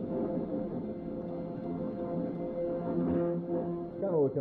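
Desktop CNC router cutting plywood: the spindle motor whines and the stepper motors sing in several steady tones that shift in pitch as the bed and gantry move, with a change a little before the end.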